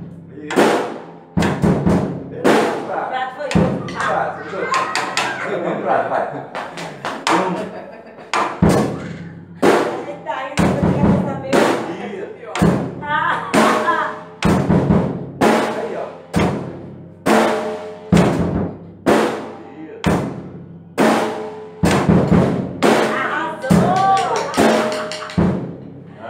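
Acoustic drum kit played in a simple steady beat of bass drum and snare strokes, about one loud stroke a second with softer strokes between.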